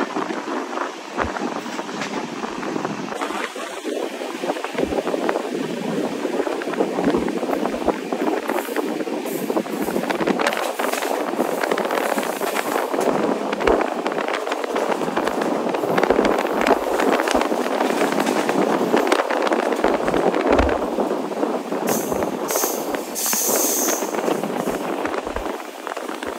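Passenger train running at speed, heard from an open coach door: a steady rush of wheels on rail and wind, broken by frequent clicks and rattles from the track. A brief high hiss comes about three-quarters of the way through.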